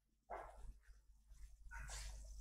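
Near silence: room tone, with two faint short sounds, one about a third of a second in and one near the end.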